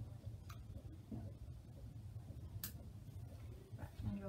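Three sharp clicks, the loudest in the middle, from a plastic syringe being handled while adrenaline is drawn up, over a steady low room hum.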